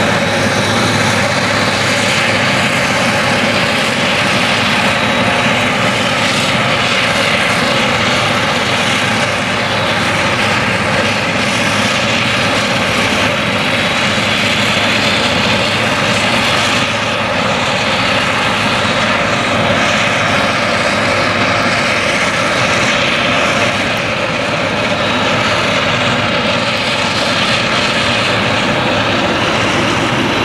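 A new Claas Jaguar self-propelled forage harvester chopping whole-crop triticale with a Direct Disc 610 header. Its engine and chopping drum run at full load as one loud, steady drone with a whine, while the chopped crop is blown out of the spout into a trailer.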